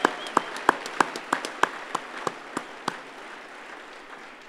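Audience applause: a steady patter of many hands with sharp, louder single claps close by about three a second over it. The clapping dies away about three seconds in.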